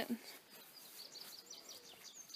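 Faint outdoor ambience with a few short, high bird chirps.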